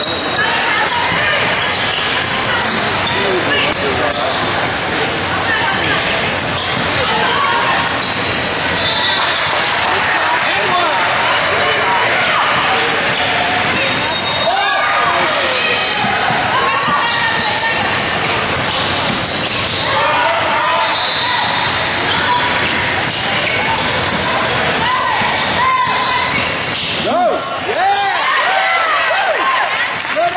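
Basketball game in a gym: a ball bouncing on the hardwood court amid voices calling out from players and the sidelines, all echoing in a large hall.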